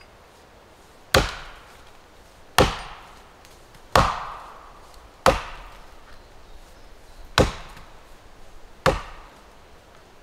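An axe chopping wood: six sharp strikes at an uneven pace, about one every one and a half seconds, each ringing out briefly.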